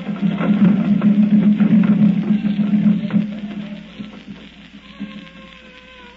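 Radio-drama orchestra music cue: a loud, dense low passage for about three seconds, then dying down to a single held note.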